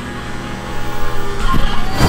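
Electric hair clippers buzzing steadily as they trim a toddler's hair, growing louder near the end.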